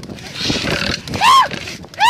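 Rekla bullock-cart driver's short, high call urging the bulls on. It rises and falls in pitch a little over a second in, and another begins right at the end, over the noise of the cart on the move.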